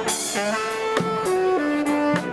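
A xaranga street band playing: saxophones and brass hold melody notes that change in steps, over snare drum and hand-cymbal strikes about once a second.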